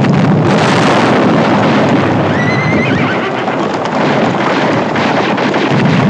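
Loud, dense din of galloping horses' hooves and sharp clatter, with a horse whinnying briefly a little over two seconds in.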